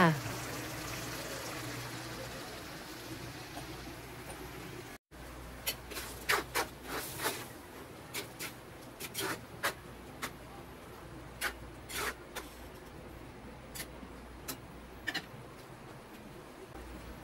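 A spatula stirring pork menudo stew in a metal frying pan, with scattered sharp clicks and taps of the spatula against the pan. Before that, in the first few seconds, a faint steady hiss of the sauce simmering fades slowly and then cuts off abruptly.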